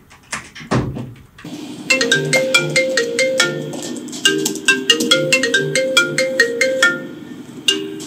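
A smartphone ringing for an incoming call: a ringtone tune of quick, short plucked notes that plays through, stops briefly about seven seconds in and starts over. Just before it starts, a loud low falling thud.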